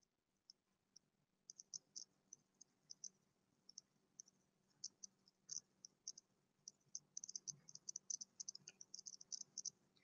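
Near silence, with faint, scattered high-pitched ticks that come more often in the second half.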